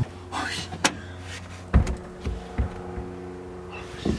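Inside a car: a low steady engine hum with a few knocks and thumps, the loudest just under two seconds in, and brief voice sounds near the start.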